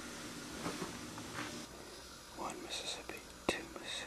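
Quiet room tone with faint whispered muttering, and a single sharp click about three and a half seconds in.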